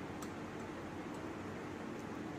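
A few faint light ticks of a metal spoon against a glass bowl of beaten egg, over a steady quiet background hiss.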